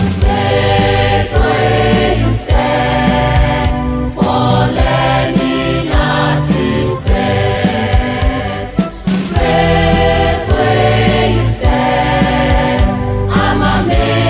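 A choir singing a school anthem over instrumental accompaniment, the lines "for learning at its best" and "alma mater so unique" among the words sung.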